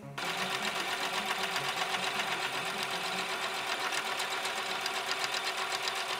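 Electric sewing machine running steadily at speed, stitching a seam, with a fast, even stitch rhythm.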